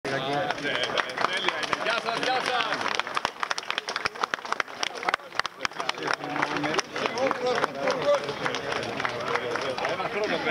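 A crowd of people talking over one another at close range, with a cluster of sharp clicks or claps in the middle.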